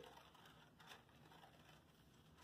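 Near silence, with a few faint snips of scissors cutting a paper plate.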